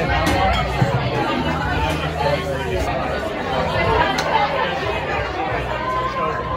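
Indistinct background chatter of several voices, steady throughout, with a few faint light clicks.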